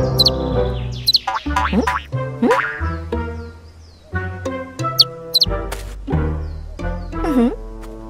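Bouncy cartoon background music, with springy swooping boing sound effects dropping and rising in pitch and a few short high chirps. A cartoon character gives a questioning "hmm?" and a laugh.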